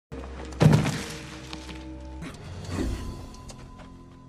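TV drama soundtrack: held background music tones with a loud heavy thud about half a second in and a softer thud near three seconds.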